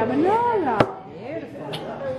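A drawn-out wordless vocal sound that rises and then falls in pitch, with a single sharp clink of a metal fork against a ceramic plate a little before halfway.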